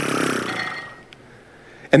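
A man making a buzzing whoosh with his mouth as a sound effect for time rushing by. It fades out about a second in.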